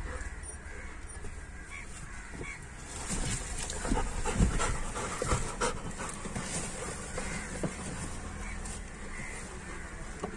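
Labrador retriever panting, with scattered small knocks and rustles.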